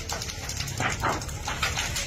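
Fire burning in timber roof framing, with a steady rumble and many sharp crackles and pops.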